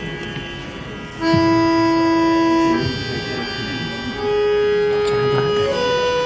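Harmonium playing long held notes, each a little higher than the last, with a few soft knocks in the background.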